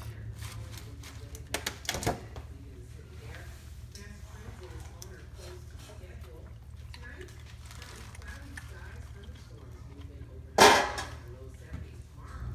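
Hot drained whole wheat fusilli tipped from a metal colander into a skillet of sauce and spinach, landing in one loud rush about three-quarters of the way through. A few light clicks come near the start, over a steady low hum.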